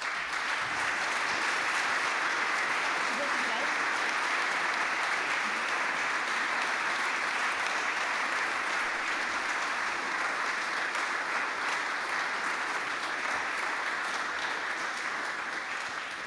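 Audience applauding steadily, starting at once and tapering off near the end.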